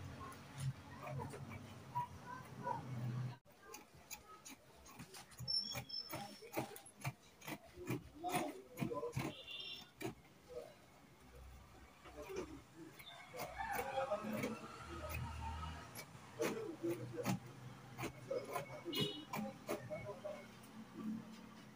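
Organza being handled and cut with fabric scissors on a cutting table: a long run of small clicks, snips and rustles.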